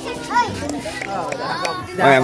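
Children's voices calling and chattering in short, scattered bursts.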